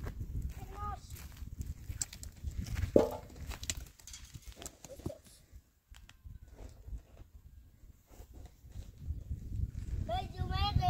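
Scattered steps and small knocks on stony ground, over a low rumble, with a short sharp cry about three seconds in.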